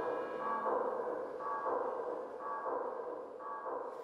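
Electronic ambient music or sound design: a pitched, sonar-like tone pulsing about once a second and slowly fading.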